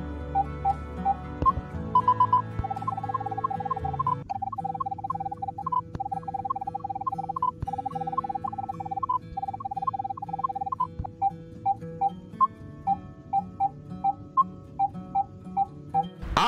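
Short electronic beeps from the OKM eXp 6000 metal detector, repeated several times a second at one pitch with an occasional higher beep, thinning out near the end: the measurement impulses of a 3D ground scan in automatic impulse mode. Background music with sustained chords plays underneath.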